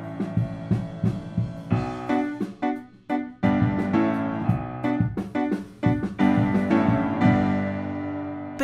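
Upright piano playing, picked up by a Soyuz SU-013 small diaphragm condenser microphone, with a drum kit in the same room bleeding faintly into the mic as scattered hits. The piano is baffled with layered packing blankets and rock wool, which cuts the drum bleed but leaves the piano sounding darker.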